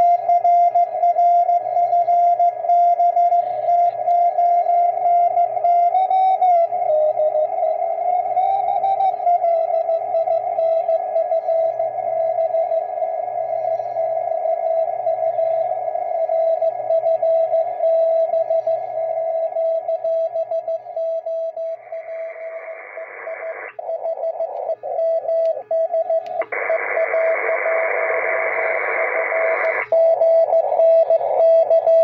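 Morse code (CW) signal received on an Elecraft K2 transceiver: a single steady tone keyed on and off in dots and dashes. Its pitch wavers briefly early on. Later the transceiver's narrow audio filter is opened up, twice: a wide hiss of band noise comes in around the keyed tone for a couple of seconds, then again near the end, showing how much noise the filter was removing.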